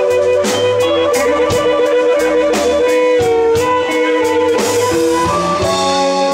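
Blues harmonica cupped to a handheld microphone, playing long held and bent notes over a band of electric guitar, electric bass and drums keeping a steady beat.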